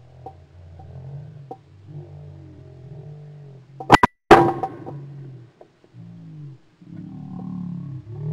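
A 12-gauge shotgun fired at pigeons: one loud, sharp blast about four seconds in. Quiet guitar music plays under it.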